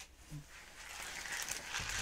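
Faint rustling and crinkling of plastic-wrapped embellishment packets being handled, building from about half a second in.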